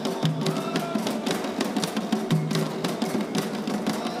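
Atabaque drums, one struck with sticks, and an agogô double bell playing a quick, steady Afro-Brazilian ritual rhythm, with voices singing over it.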